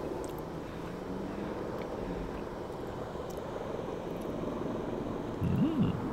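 A steady low background rumble, of the kind given by distant traffic or an aircraft, with a faint steady tone in the first couple of seconds. A short voiced hum rises and falls near the end.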